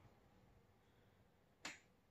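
Near silence: room tone, broken once by a single sharp click near the end.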